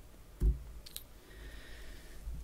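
A soft low thump about half a second in, then a couple of faint clicks around one second in, as the presentation slide is advanced at the lectern.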